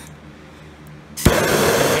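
Handheld gas torch flame hissing loudly and steadily as it heats a copper pipe joint for soldering, starting abruptly with a sharp click a little over a second in.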